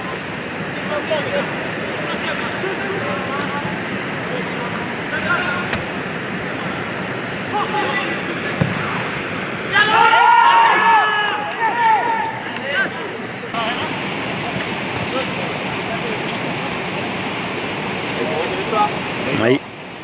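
Football players shouting calls to each other across the pitch, with a loud burst of shouting about ten seconds in and fainter shouts elsewhere, over a steady rushing noise of wind on the microphone.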